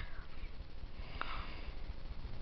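Two faint computer mouse clicks about a second apart, over a low steady room rumble.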